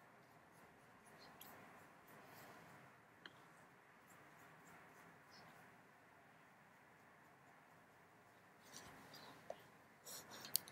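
Near silence: room tone with a few faint scratchy rustles and a single tiny click about three seconds in, a slightly louder rustle near the end.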